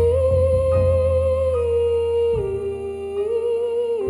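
A female singer holding long, drawn-out notes with almost no audible words, over a low, steady instrumental accompaniment. Her pitch steps down about halfway through and lifts slightly near the end.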